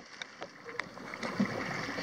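Faint sea water lapping and sloshing against a boat, with a few small drips and light wind on the microphone.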